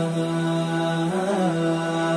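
Closing theme music: a low voice chanting long held notes, with a short wavering turn about a second in.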